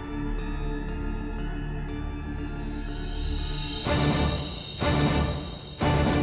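Tense dramatic background score: a sustained low drone under a fast ticking pulse, swelling up about halfway through into heavy percussive hits about once a second.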